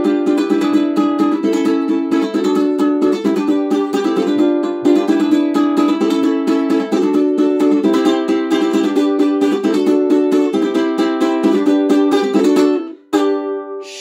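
Ukulele strummed in a quick, steady rhythm of chords, with a brief pause near the end before another chord rings.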